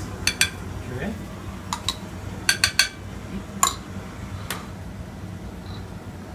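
A small spoon clinking against a glass jar and a ceramic plate as purée is spooned out during plating. About nine sharp clinks come in small clusters over a steady low hum.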